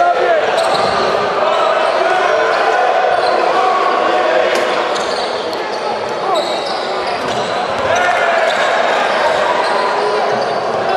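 Crowd chatter and shouting in a large sports hall during a basketball game, with a basketball bouncing on the hardwood court.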